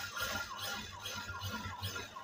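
Industrial straight-stitch sewing machine running at a slow, even speed, stitching a half-inch seam in cotton fabric. A steady whine carries a short squeaky chirp and a soft knock about five times a second with each needle stroke.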